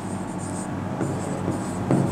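Handwriting with a marker on a board: light scratching strokes and a few faint taps, over a steady low hum.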